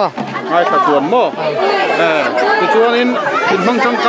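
Speech only: a woman talking into a handheld microphone, with people chattering around her.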